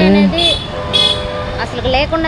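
A vehicle horn sounds one steady tone for about a second, in the middle of the clip, amid street traffic. Voices are heard just before and after it.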